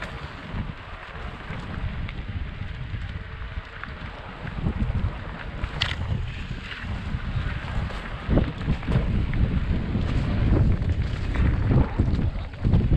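Wind buffeting the microphone of a helmet-mounted camera on a mountain bike descending a rough dirt singletrack, with a low rumble and scattered knocks from the bike jolting over the trail. It gets louder and bumpier in the second half.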